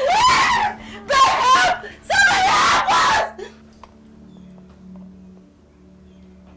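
A person screaming and wailing in distress over an unresponsive elderly man: three long, loud cries. About three seconds in they stop and a faint, steady low music drone is left.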